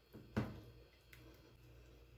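A metal spoon setting thick, cooled vatapá into a lunch container: one short knock about half a second in, a faint tick a little later, and otherwise only faint room hum.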